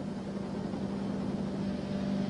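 Motorboat engine running steadily: a low, even drone with a hiss of wind and sea behind it.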